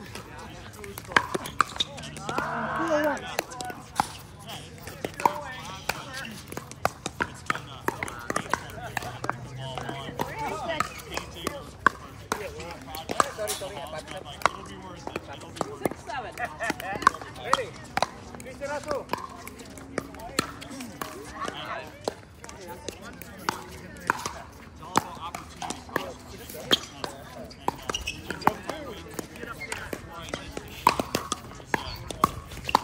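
Pickleball paddles hitting a plastic pickleball: sharp, irregular pops repeated throughout, with voices of people talking.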